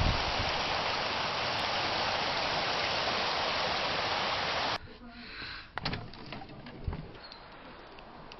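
A steady rushing noise that cuts off abruptly about five seconds in, leaving a quieter background with a few faint clicks and knocks.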